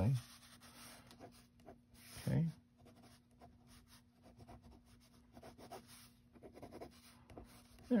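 Ballpoint pen scratching on sketchbook paper in many short, quick strokes as lines are drawn and gone over. The sound is faint.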